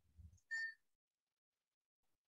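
A brief high-pitched chirp, a few pure tones together lasting about a quarter of a second, about half a second in; otherwise near silence.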